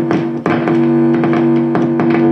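An Epiphone Lucille electric guitar is strummed on its neck pickup through a Bugera V22 amp's overdrive channel. The chord is struck again about half a second in and then held ringing. The guitar's volume knob is at minimum and its tone knob fully open, so only a little of the amp comes through and the sound is dark.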